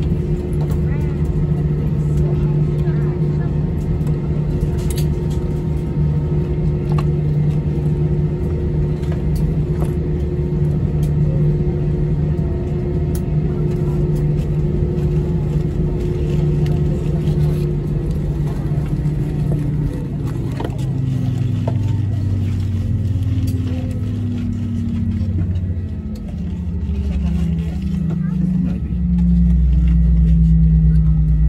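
Airbus A320-200 jet engines heard from inside the cabin during taxi, a steady droning hum. About two-thirds of the way through, the engine tones fall in pitch over several seconds, and a deeper, stronger drone comes up near the end.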